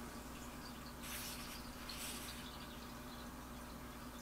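Quiet room tone with a faint steady hum and two soft, brief rustles about a second and two seconds in, from tarot cards being held and shifted in the hands.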